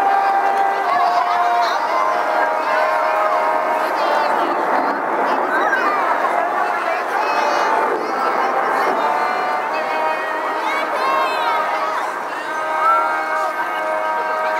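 Brass quartet of two trumpets and two trombones playing outdoors in sustained chords, with crowd chatter and children's voices over the music.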